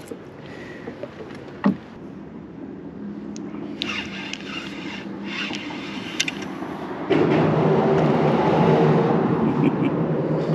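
Light handling noise with a single click, then about seven seconds in a spinning reel is cranked steadily as a small fish is reeled up to the kayak.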